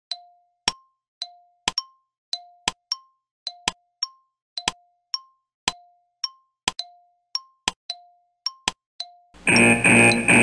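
Countdown-timer sound effect: a clock ticking about twice a second, alternating a lower and a higher tick, then a loud alarm ringing for about a second and a half near the end as the time runs out.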